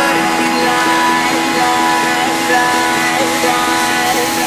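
Background pop music, an instrumental stretch of the song with no vocals.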